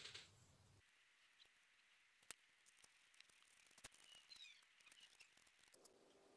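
Near silence: faint room tone with two small clicks and a few faint high chirps near the middle.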